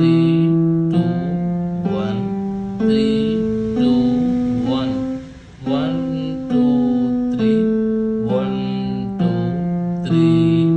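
Yamaha electronic keyboard played one note at a time in the left hand, a C major scale. The notes climb step by step from E to the C above, then step back down, about one note a second.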